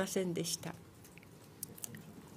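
A woman speaking Japanese into a microphone, trailing off within the first second, then a pause of faint room tone with a few small clicks near the end.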